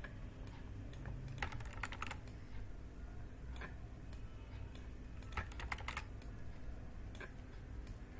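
Faint, scattered clicks of a computer mouse and keys while working in a circuit editor, some coming in quick pairs, over a steady low room hum.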